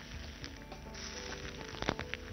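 Banana-leaf fish parcels frying in oil in a pan, a faint steady sizzle, with a sharp click near the end as the parcels are handled. Soft background music plays underneath.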